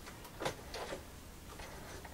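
A few faint clicks and light handling sounds at a stopped sewing machine as the stitched work is drawn out from under the presser foot, threads trailing.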